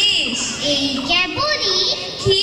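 Only speech: girls' voices reciting in Bengali through handheld microphones.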